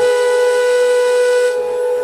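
Indian flute holding one long, breathy note in a relaxing instrumental piece; the breath noise falls away about one and a half seconds in while the note is held on more softly.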